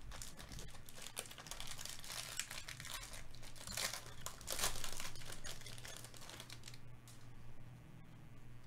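Foil wrapper of a Topps baseball card pack crinkling and tearing as it is torn open by hand, loudest about four to five seconds in and stopping near the end.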